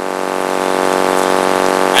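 A loud, steady droning hum with many even overtones, swelling slightly louder.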